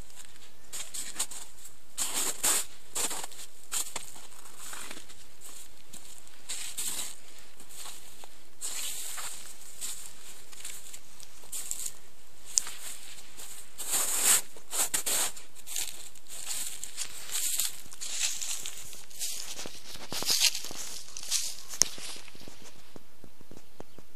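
Footsteps on snow, dry grass and soft soil, coming in irregular clusters of crunching and rustling over a steady background hiss.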